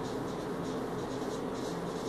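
Felt-tip marker writing on a whiteboard: a quick run of short scratchy strokes, several a second, as letters are written.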